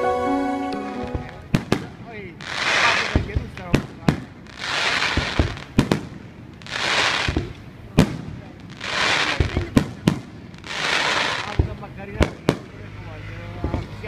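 The end of a short music cue, then an aerial fireworks display: sharp shell bursts go off every second or so, and about every two seconds a hissing, crackling swell lasting about a second rises and fades.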